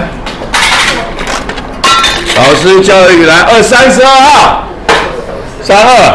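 Mostly speech: a student's voice answering in a classroom for a couple of seconds, with a short burst of noise about half a second in.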